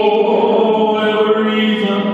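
A man singing live into a microphone, holding one long note.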